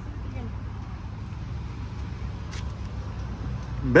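A car engine idling: a steady low hum, with one faint click about two and a half seconds in.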